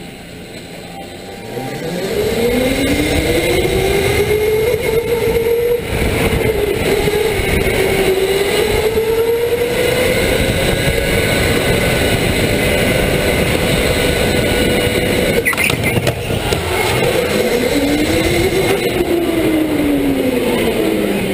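Electric go-kart motor whining under a broad rush of tyre and wind noise. Its pitch climbs as the kart accelerates about two seconds in, wavers up and down with speed through the corners, then dips and rises again near the end. There is a short knock about three-quarters of the way through.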